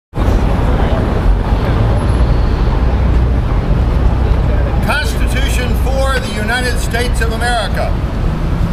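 City traffic noise: a steady low rumble of road vehicles. A person's voice starts speaking over it about five seconds in.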